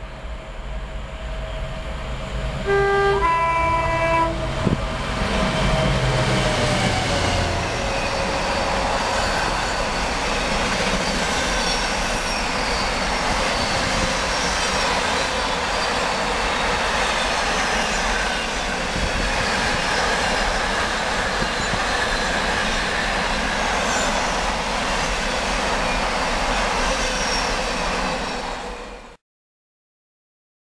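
A Class 66 diesel locomotive hauling an intermodal container freight train sounds a two-tone horn, a higher note then a lower one, about three seconds in, then passes at speed. The loud pass of the locomotive gives way to a long, steady rumble and clatter of container wagons rolling by, which cuts off suddenly just before the end.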